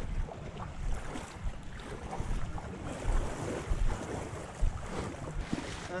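Wind buffeting the microphone in gusts, with water sloshing around legs wading in shallow water.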